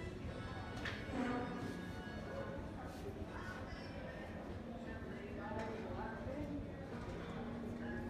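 Indistinct background voices with music playing, and a couple of short clicks about one and three seconds in.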